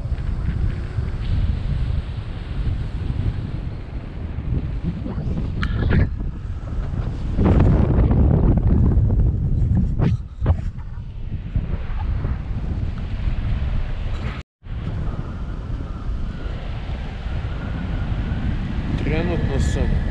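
Rushing wind noise from the airflow of a paraglider flight buffeting the microphone, swelling louder for a couple of seconds in the middle. It drops out to silence for an instant about three-quarters of the way through.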